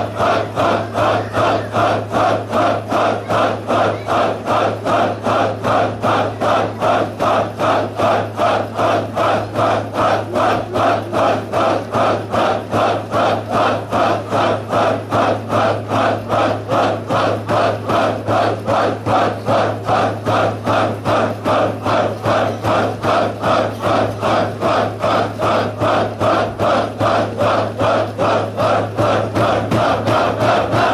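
A group of men chanting a dhikr together in a fast, very even rhythm, about two strong beats a second, over a low steady hum.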